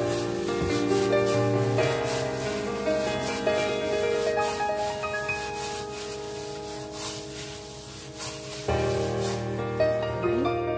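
Instrumental background music with long held notes. Under it, the rubbing and rustling of a plastic-gloved hand mixing minced pork in a steel bowl.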